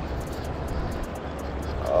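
Steady low rushing of flowing river water around the wading angler, with faint scattered ticks.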